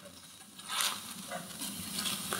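A quiet pause in the talk: faint room noise with one brief, soft hiss about three-quarters of a second in.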